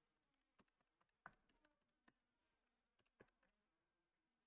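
Near silence, broken by several faint, irregular finger taps on a small handheld device.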